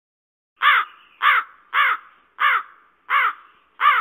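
A crow cawing six times, the caws evenly spaced a little over half a second apart and starting about half a second in.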